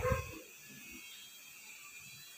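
A voice trails off in the first half-second, then quiet room tone.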